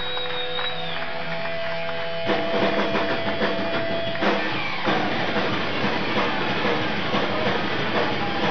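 Live rock band in concert: a held lead note rings over sustained chords, then about two seconds in the drums and full band come crashing in with electric guitar. The recording is dull-toned, with no top end.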